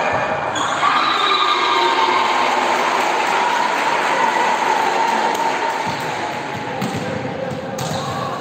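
Girls' volleyball players and spectators cheering and shouting together in an echoing sports hall as a point is won, swelling about a second in and easing off after about six seconds. Near the end the ball bounces a few times on the hall floor.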